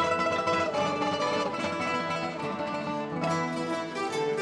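Classical guitar ensemble playing. The full group comes in suddenly and loudly at the start with many fast plucked notes ringing together.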